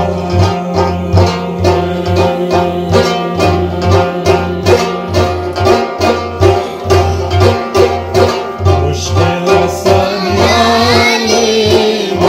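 Devotional folk music: a hand-played frame drum (daf) keeps a steady beat under a plucked long-necked lute. A man's singing voice comes in near the end.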